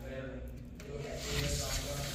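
A man's voice talking in Spanish at a distance, faint and indistinct against the room: a salesperson presenting the house to visitors.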